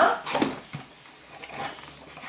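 Cardboard box being opened by hand: faint rustling and scraping as the lid is lifted, after a short vocal sound about half a second in.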